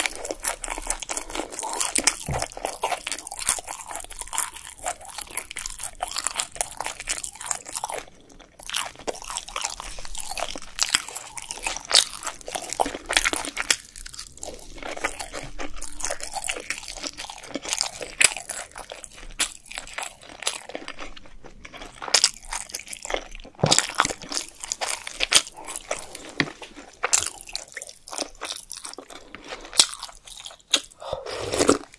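Close-miked chewing of Korean snack-bar food such as fried twigim and mini kimbap: a dense run of crisp crunches, wet clicks and smacks from the mouth, briefly quieter about 8 s in.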